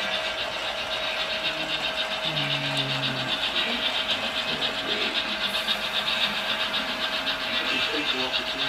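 Running sounds of On30 model steam locomotives on a layout: a steady hiss with a rapid flutter in it over a constant hum, with faint voices of people in the room behind.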